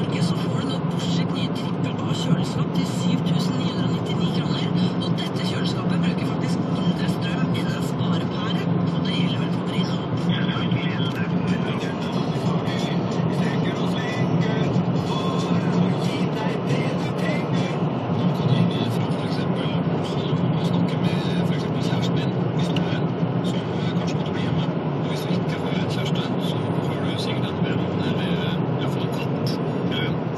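Steady engine and road drone heard inside a car's cabin while it cruises at an even speed.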